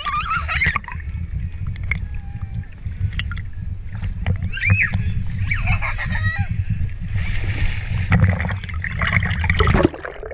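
Pool water sloshing and splashing against an action camera at the surface, a steady low rush, with a child's high squeals and shouts about half a second in and again around five to six seconds. A brief hissing splash comes near eight seconds.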